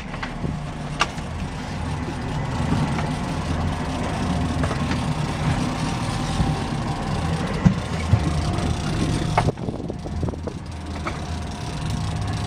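Boat's outboard motor running steadily with wind rushing over the microphone, under a faint steady whine that fades out about three-quarters of the way through.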